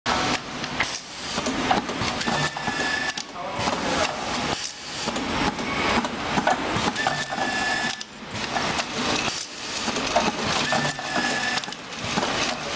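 Multi-spindle automatic screw-driving machine running its cycle: clicking and clattering of the spindles and screw feed. A short steady whine comes three times, about four seconds apart, as the screws are driven.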